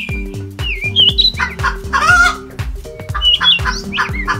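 A hen clucking over background music with a steady beat, with short chirping bird calls near the start, around a second in and near the end; the loudest clucking comes about halfway through.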